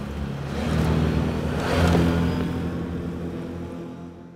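Can-Am Outlander 6x6 ATV's V-twin engine driving past, growing louder to a peak about two seconds in and then fading as it moves away.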